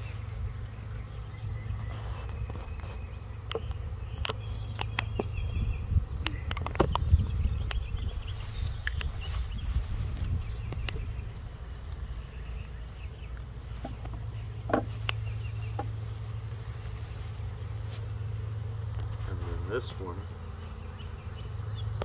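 Honeybees buzzing around an opened hive, a steady low hum, with scattered clicks and knocks as the wooden frames are handled.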